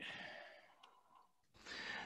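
A man's faint breathy exhale, fading out within about half a second, then near silence until a faint hiss comes in near the end.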